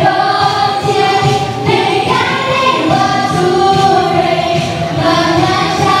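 A group of women and children singing a Chinese New Year song together into microphones, with musical accompaniment.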